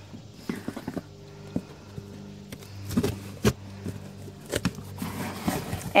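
A cardboard shipping case being opened by hand, with scattered short knocks and scrapes of cardboard flaps and packaging over a steady low hum.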